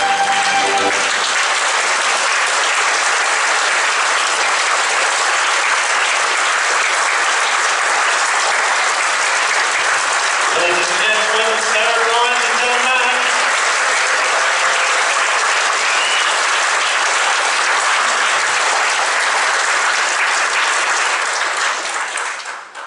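Audience applauding steadily in a large hall, starting as the final held chord of a theatre organ cuts off about a second in. A voice is heard briefly near the middle.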